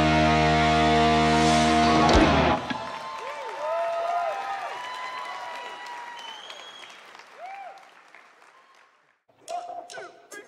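A live rock band holds its final chord, which cuts off about two and a half seconds in. Audience cheering and shouts follow, fading away to near silence.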